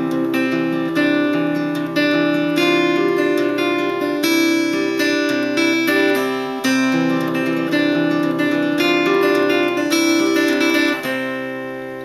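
Acoustic guitar fingerpicked in a Travis-picking pattern: an alternating-thumb bass under a syncopated melody in C major. The last notes ring out and fade near the end.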